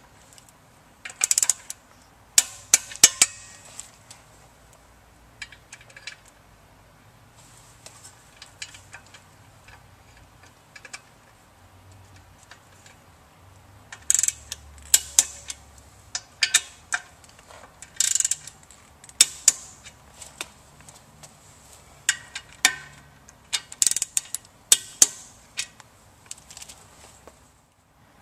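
Ratchet torque wrench clicking in short runs with sharp metal clinks as the motor-mounting bolts are torqued down, in several bursts with quieter gaps between.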